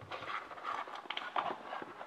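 Cardboard box sliding out of its cardboard sleeve: a soft scraping of paper on paper with a few light ticks.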